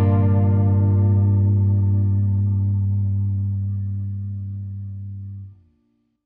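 The final chord of a rock song, held on electric guitar through distortion and chorus effects, ringing out and slowly fading, then cut off suddenly near the end.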